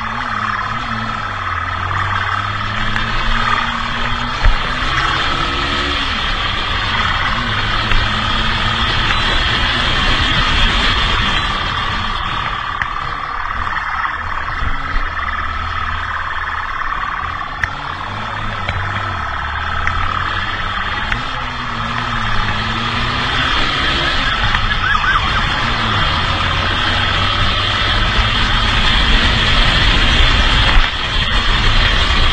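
Motorcycle engine running at road speed, its revs stepping up and down with gear changes and throttle, under a steady rush of wind on the microphone.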